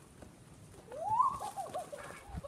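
A high vocal call starting about a second in: one rising glide, then a quick run of short wavering tones that rise and fall.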